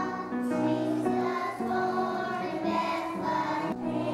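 A group of young children singing a song together as a choir, with notes changing about every half second.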